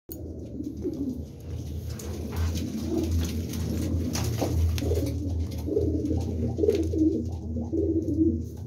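Domestic pigeons cooing over and over in a small loft room, with a steady low hum underneath.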